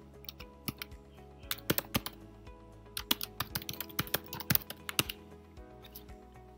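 Typing on a computer keyboard: irregular runs of sharp keystrokes, with short pauses between runs, as text is entered into form fields.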